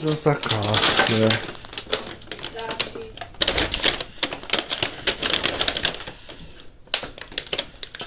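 Brown kraft paper shopping bag rustling and crinkling as it is held open and rummaged through, a rapid, uneven run of papery crackles.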